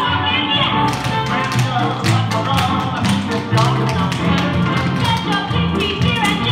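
Tap shoes striking a wooden floor in quick rhythmic clusters, starting about a second in, over loud recorded music.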